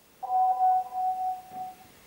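A single chime tone rings out for about a second and a half and fades, with its weaker higher and lower tones dying away after the first half-second.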